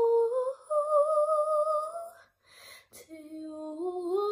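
A young woman's voice singing held, wordless notes with no instruments behind it. The pitch climbs and holds, breaks off for a breath about two and a half seconds in, then a new phrase starts lower and climbs again near the end.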